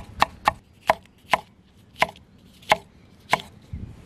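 Chef's knife slicing a red bell pepper on a wooden cutting board: about eight sharp knocks of the blade on the board, quick at first, then spaced further apart.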